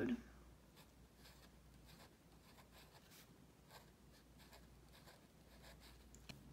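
Faint scratching of a felt-tip pen writing on lined notebook paper: a string of short, soft strokes as a word is written out.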